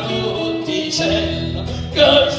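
Live Neapolitan folk ensemble playing a short instrumental stretch between sung lines: acoustic guitar under held steady notes from the other instruments, with the voices coming back in loudly at the very end.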